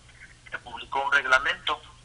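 Speech only: a man talking over a telephone line, after a short pause.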